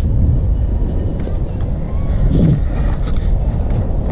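Wind buffeting the action camera's microphone, a steady low rumble, with a short voice sound about two and a half seconds in.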